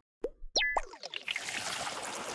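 Transition sound effect for an animated title card: a few quick bubbly plops and a short falling blip in the first second, then a soft, steady hiss.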